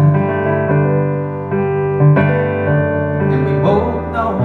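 A male singer performing a slow song live, singing over piano accompaniment with held chords.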